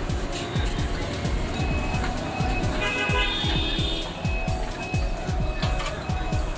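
Background music with a fast, steady beat of deep bass drum hits.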